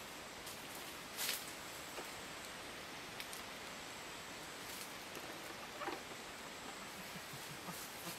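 Steady outdoor hiss with a few short, light rustles and wooden knocks as a small wooden birdhouse is handled and hung against a tree trunk.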